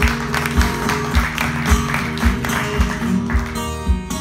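Two acoustic guitars playing an instrumental passage of strummed chords and picked notes, with no singing. A low thump falls on each beat, about twice a second.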